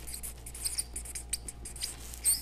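Felt-tip marker squeaking and scratching on flip-chart paper as a word is handwritten, in a run of short, high-pitched strokes.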